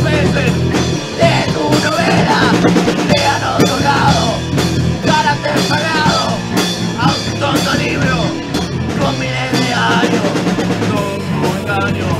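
Loud post-hardcore rock music: a full band recording with a drum kit.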